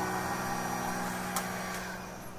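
Small handheld blow dryer running steadily: a low hum under a rushing blow of air, growing gradually quieter.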